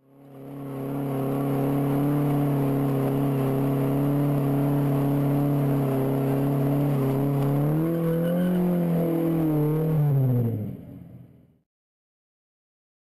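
Car engine held at high, steady revs through a burnout, climbing a little about eight seconds in, then dropping away as it fades out near the end; it fades in at the start.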